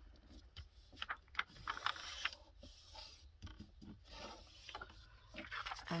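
A sheet of paper being folded over and handled by hand: faint scattered rustles, small scrapes and light taps.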